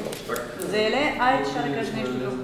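Indistinct voices of several people talking and calling out, with some high-pitched voice sounds.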